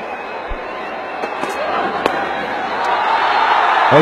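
Cricket ground crowd noise, with a sharp crack of bat on ball about two seconds in. The crowd then swells as the shot runs away for a boundary four.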